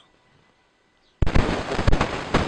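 Near silence, then about a second in a sudden loud, dense crackling noise that carries on.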